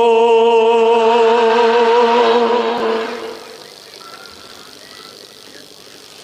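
A man's voice holding one long sung note with a slight waver, the drawn-out end of a chanted phrase in a Bengali Islamic sermon (waz). It fades out about three seconds in, leaving a quiet background hum.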